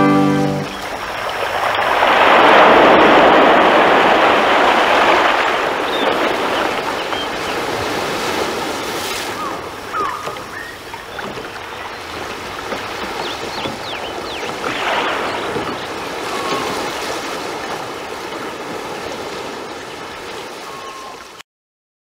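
Sea waves washing in on a shore as a radio-play sound effect, swelling strongly about two seconds in and again more softly later, then cutting off abruptly near the end. The last note of a brass music cue fades out in the first second.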